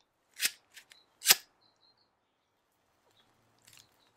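Handheld lighter struck twice to light a cigarette: two sharp, scratchy flicks about a second apart, the second louder, with a couple of small clicks between them and a faint crackle near the end.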